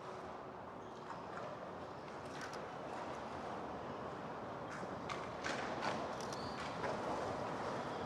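Faint, steady outdoor background noise that slowly grows a little louder, with a few soft scattered taps or clicks.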